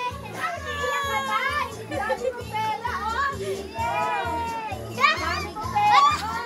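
Excited, high-pitched voices of a family group calling out and chattering, children's among them, over background music with a steady bass beat.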